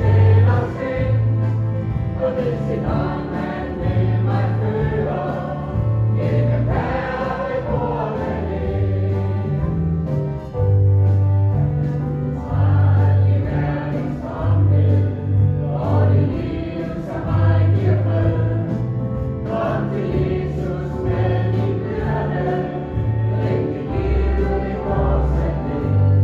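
Gospel song with a choir singing over instrumental accompaniment and a steady, repeating bass line.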